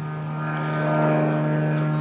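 A steady engine drone with a fixed hum and many overtones, growing louder over the first second and then holding.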